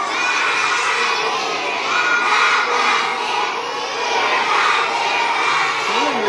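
Many young children's voices shouting and cheering together as a crowd, loud and continuous.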